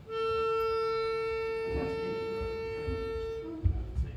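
Pitch pipe blown to give a barbershop chorus its starting note: one steady reedy tone held for about three and a half seconds, followed by a faint, brief lower note and a thump near the end.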